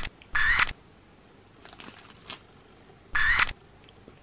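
Three short, identical high-pitched squeaky sound effects: one right at the start, one about half a second in, and one just after three seconds in. Faint clicks come between them.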